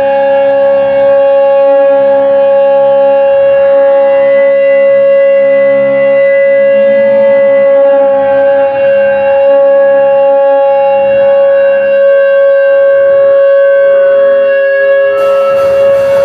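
Electric guitar amplifier feedback: one loud, steady high tone held for about fifteen seconds, with quieter guitar notes under it. Near the end the full band comes in with drums and cymbals.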